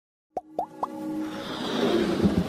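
Intro sound effects and music: three quick pops, each rising in pitch, about a quarter second apart, then a swell of music that builds in loudness.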